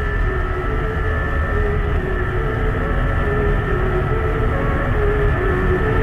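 Yamaha R15S's single-cylinder engine held at high revs under full throttle as the bike accelerates, with heavy wind rumble on the microphone.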